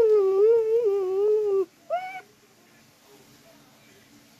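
A high-pitched child's voice humming a wordless, wavering tune for about a second and a half, then one short high note about two seconds in.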